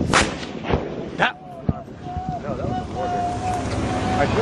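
Gunfire in a firefight: four sharp shots within the first two seconds, with a man's voice calling out between and after them.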